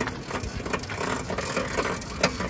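Pedal quadricycle being pedalled over paving: its chain drive and steel frame rattle and click steadily as it rolls.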